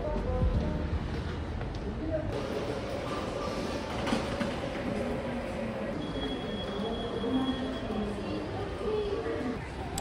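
Subway station ambience: a steady rumble and hiss with the murmur of passers-by's voices, growing fuller about two seconds in. A thin, high steady tone sounds for a couple of seconds past the middle.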